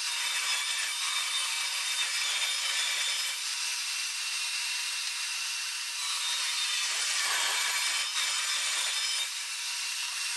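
Table saw running and cutting through aluminum sheet, a steady high-pitched whir with almost no low hum, shifting slightly about six seconds in as the cut goes on.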